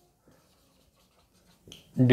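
Faint marker pen writing on a whiteboard: a few light taps and scratches of the tip on the board.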